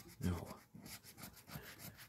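Coin scratching the latex coating off a scratch-off lottery ticket in a run of quick, rasping strokes, about eight of them, the hardest near the start.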